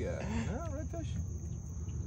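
A steady, high, thin insect drone, with a brief faint voice in the first second and a low hum underneath.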